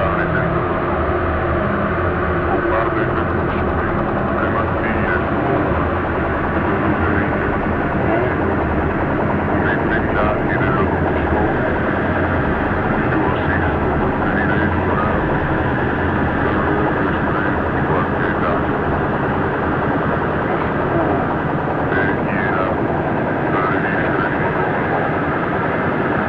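Live experimental electronic music: a dense, steady drone with a deep low hum underneath and short chirping glides flickering over the top.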